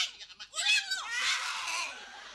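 A shrill shouted cry in a high, strained voice about half a second in, then a burst of laughter that fades away.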